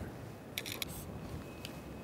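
Retractable steel tape measure being pulled out, its blade rattling in the case: a quick run of sharp clicks about half a second in, and one more click later.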